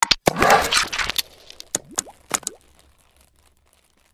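Intro sound effects for an animated logo reveal: a sharp click, a roughly one-second whoosh, then a few quick pops with short rising pitch sweeps, dying away within about three seconds.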